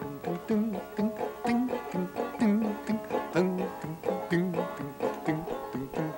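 Banjo finger-picked, playing a simple folk melody as a run of single plucked notes.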